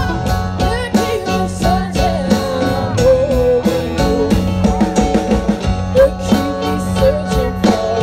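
Live band playing a song: a woman singing lead over a drum kit, electric guitars and keyboard, with a steady drum beat.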